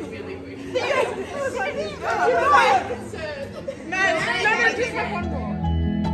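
Several women's voices talking and exclaiming over one another, not as clear words. Background music comes in about five seconds in.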